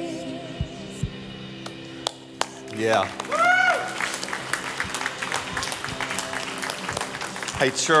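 A worship band's last held chord fades out as the song ends. About three seconds in, a single drawn-out cheer rises and falls, and then the congregation applauds and claps until the end.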